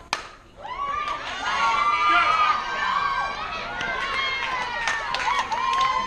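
A softball bat strikes the ball once with a sharp crack, and about half a second later a crowd of spectators and players breaks into loud, high-pitched cheering and shouting, with clapping in the last couple of seconds.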